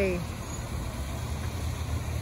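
A steady low rumble in the background, with a voice trailing off right at the start.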